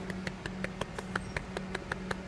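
Rapid knocking on a city bus's glass front door, about seven quick knocks a second, over a steady low hum.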